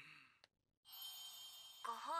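Near silence in a pause of the anime's dialogue: a single faint click about half a second in, then a faint hiss with thin high tones. A voice starts speaking just before the end.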